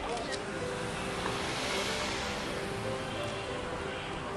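Street ambience: a vehicle passes, its noise swelling to a peak about halfway through and then fading, over faint background music with sustained notes.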